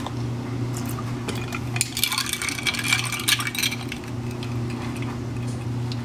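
Light clinks of ice and a metal straw against a glass mason jar as creamer is poured into iced coffee and stirred, busiest about two to four seconds in, over a steady low hum.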